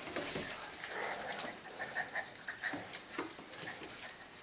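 Two dogs play-wrestling: soft, short whines and grumbles with claws clicking on a tiled floor.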